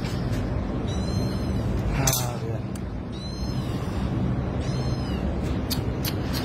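Kitten mewing: three short, high-pitched cries about two seconds apart, over a steady low hum.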